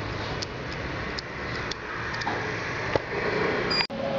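Steady background noise with a few faint, scattered clicks. A brief dropout comes near the end.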